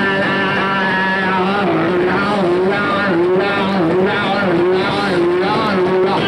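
Live rock band playing loudly, led by a heavily distorted electric guitar that repeats a sliding, bending phrase over and over.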